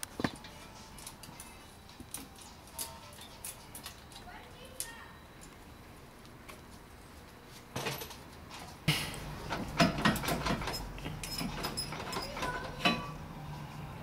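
Scattered light clicks, taps and scrapes of a wire coat hanger being handled, threaded and twisted around a suspension strut to hang a brake caliper. The handling is sparse at first and grows busier and louder in the second half.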